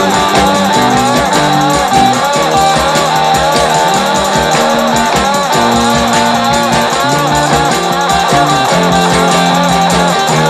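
Rock and roll recording in a guitar-led passage without singing: electric guitar over a bass line that steps between held notes and a fast, steady drum beat.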